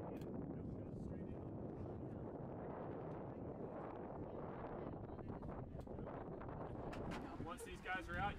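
Muffled, indistinct voices over a steady low rumbling background, with clearer voices near the end.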